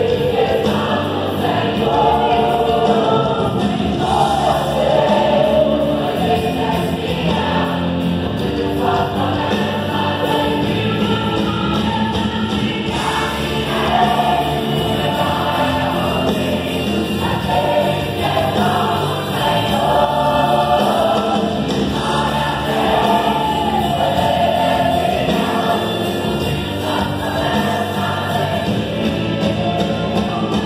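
Large mixed choir of women and men singing a gospel song together, continuously and at a steady level.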